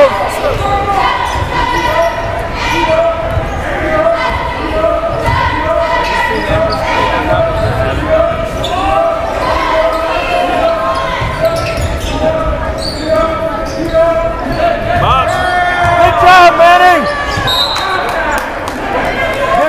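A basketball being dribbled on a gym's hardwood floor, with voices calling out over it and the echo of a large hall.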